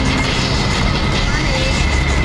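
Steady din of road traffic with people's voices mixed in.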